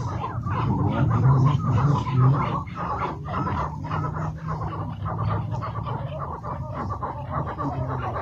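Chukar partridges calling, a rapid run of repeated short chuck notes going on throughout, over a steady low hum.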